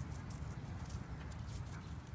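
Faint low rumble with a few light clicks, slowly fading out.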